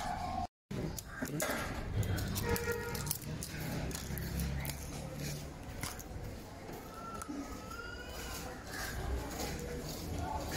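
Light clicks and taps of hands handling an aerosol spray can and fitting its thin plastic nozzle straw, mostly in the first few seconds, with faint voices in the background.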